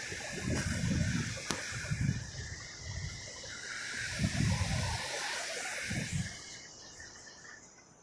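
Steady hiss of ocean surf washing on a sandy beach, with low muffled thumps every second or so.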